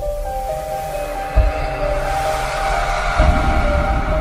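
Background music for a channel logo intro: held steady tones with two deep low hits, one about a second and a half in and another near the end.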